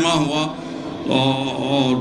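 A man's oratorical speech over a microphone, in a sing-song delivery: a few words, a short dip, then one long held syllable through the second half.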